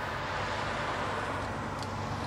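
Steady low hum and rumble of background noise outdoors, with no distinct events.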